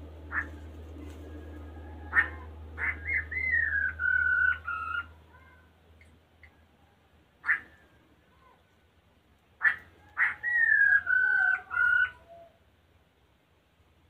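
A bird calling in two bouts, each a quick run of sharp notes followed by a whistled phrase that falls in pitch. A single sharp note comes between them. A low steady hum fades out about five seconds in.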